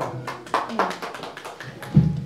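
Scattered hand clapping of uneven, irregular claps, with a dull thump near the end.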